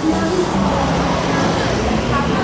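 Steady street traffic noise, with a motor vehicle engine running close by.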